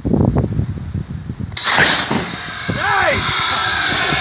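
Homemade compressed-air cannon firing about a second and a half in: a sudden loud blast of released air, followed by a steady hiss. A person's voice calls out briefly soon after.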